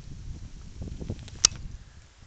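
Footsteps on snow and camera handling, with a low rumble of wind on the microphone and one sharp click about one and a half seconds in; the rumble drops away near the end.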